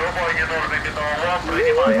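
A high-pitched voice making short wordless calls, over a faint low rumble.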